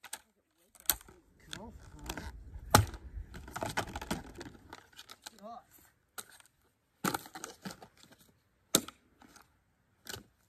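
Rubber boots stamping on the shards of a broken plant pot, cracking and crunching them: a handful of sharp cracks, the loudest about three seconds in, with crinkling and scraping of pieces between them.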